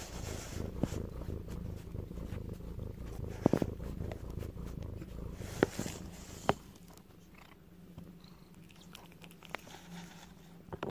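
Domestic cat purring close to the microphone: a low, evenly pulsing rumble that fades after about seven seconds. A few sharp clicks or taps sound over it.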